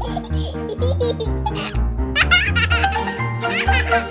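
Cheerful background music with a steady bass line, with a young child's high-pitched giggling laid over it in several short bursts.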